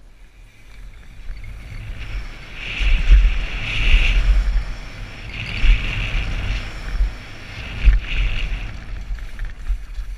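Wind buffeting a helmet-mounted camera's microphone, with tyre and trail rumble, as a mountain bike descends a dirt trail at speed. It builds up over the first couple of seconds and swells and gusts several times, loudest around three to four seconds in and near eight seconds.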